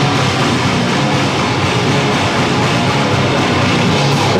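Goregrind band playing live at full volume: a dense, unbroken wall of heavily distorted guitar and bass.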